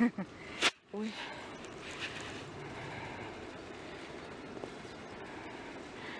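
Steady outdoor background hum with no clear source, opened by a brief snatch of voice. About two thirds of a second in there is a sharp click, followed by a moment of near silence.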